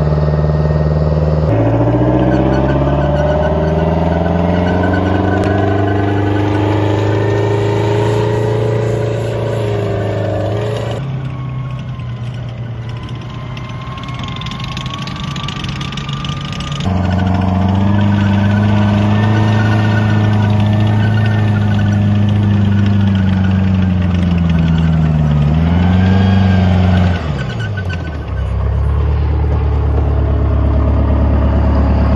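M109 Paladin self-propelled howitzer's diesel engine running and revving, its pitch climbing as the vehicle pulls away, then holding steady with a brief dip. The engine sound changes abruptly a few times between shots.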